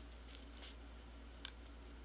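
Faint handling sounds of printer paper and clear adhesive tape being pressed along a seam: a few short, sharp ticks and light rustles, spaced irregularly.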